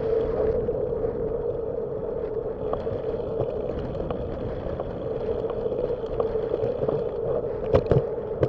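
Bicycle rolling along a concrete path, picked up from the bike: a steady hum of ride and wind noise with scattered light clicks, and two sharper knocks near the end.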